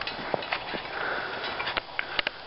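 Footsteps crunching in snow: a few uneven crunches with faint rustling between them.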